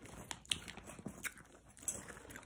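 Items in a handbag being rummaged through: faint rustling with a few short clicks and taps.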